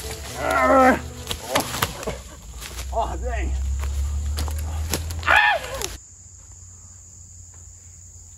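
Drawn-out yells from a staged play-fight, three times, with a few sharp knocks between them over a low steady hum. About six seconds in the sound cuts off suddenly to a quiet background of crickets chirping steadily.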